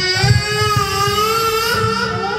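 Karaoke song: one long sung note held for about two seconds over a backing track with a low, steady beat.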